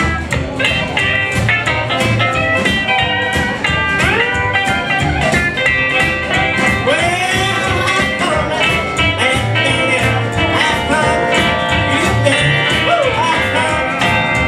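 Live country band playing an instrumental passage: upright bass, acoustic and electric guitar, drums and steel guitar over a steady beat, with sliding lead notes several times.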